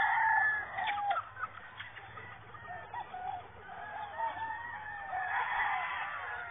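Chickens calling as they feed: a rooster's long crow in the first second, then softer clucking that builds again near the end.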